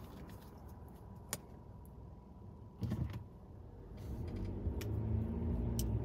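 Low rumble inside a car's cabin, with a single sharp click a little over a second in and a brief low sound near the middle. A low steady hum builds up over the last two seconds.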